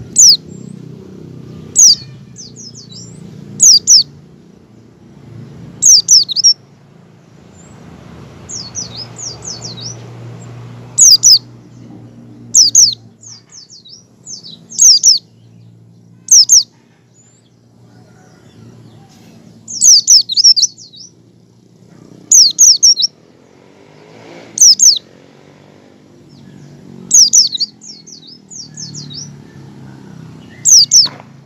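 A caged white-eye (pleci) calling in its ngecal style: sharp, high, falling chip notes, singly or in quick pairs and triplets every second or two, some trailed by softer twittering.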